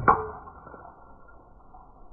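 Golf club swishing down and striking a teed ball with one sharp crack about a tenth of a second in, the crack dying away into low background noise.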